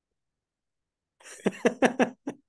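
A man's short laugh, starting just over a second in: a breathy intake followed by a few quick, sharp bursts.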